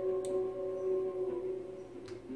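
Music at the start of a song: a held, ringing note with steady overtones that fades out about a second and a half in.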